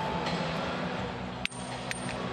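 Steady hum of an indoor arena hall, broken about one and a half seconds in by a sharp click with a thin, high ringing after it, and a second lighter click just before the end.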